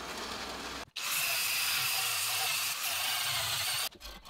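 A metal-cutting bandsaw running through a 6 mm steel plate. About a second in it gives way to a louder, steady hissing sound of a power tool grinding paint and zinc coating off steel, which stops just before the end.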